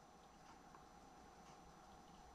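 Near silence: room tone with a few very faint small ticks.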